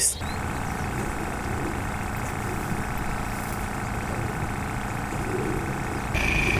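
A steady mechanical hum, even in level throughout, with no voices over it.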